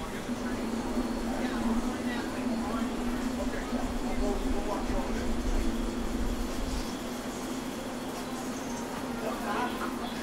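MBTA Red Line subway train standing at the platform, with a steady hum and a low rumble underneath that stops about seven seconds in, amid the chatter of passengers on the platform.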